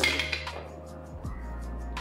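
A handful of dice thrown into a dice tray for an attack roll, clattering at once and settling within about half a second. Quiet background music runs underneath.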